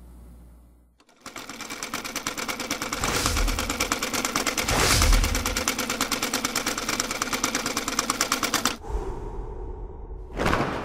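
Rapid, even mechanical clicking like turning gears or a ratchet, a sound effect for animated spinning gears. It starts about a second in, builds with a low rumble under it to a peak around the middle, and stops suddenly near the end.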